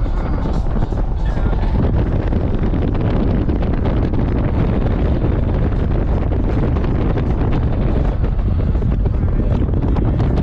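Car driving at road speed: a steady, loud rumble of wind buffeting the microphone and road noise, with music playing underneath.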